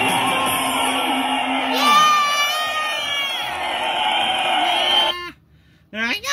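A crowd cheering with children shouting, one voice whooping about two seconds in; the cheering cuts off suddenly a little after five seconds.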